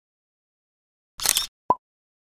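Two edited-in sound effects: a short hissing swoosh about a second in, then a quick, sharp pop with a brief single tone just after it.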